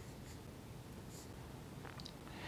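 Faint pen strokes on the board as a few short, light scratches while an expression is written out.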